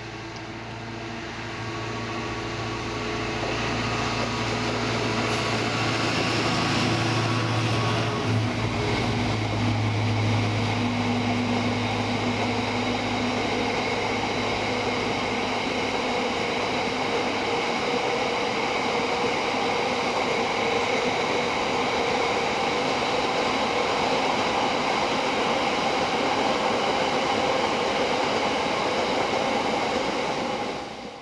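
Diesel freight locomotive passing close by, its engine note building over the first few seconds and strongest for about the first ten. Then the steady rumble of a long rake of hopper wagons rolling past on the rails.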